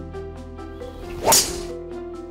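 One loud whoosh of a golf driver swinging through, peaking a little past halfway, over background music of repeating piano-like notes.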